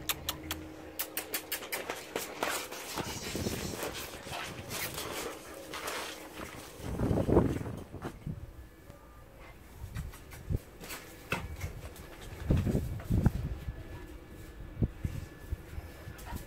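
A dog making excited greeting noises while it is petted, loudest about seven seconds in and again around twelve to thirteen seconds. Frequent clicks and rustles of handling noise run underneath.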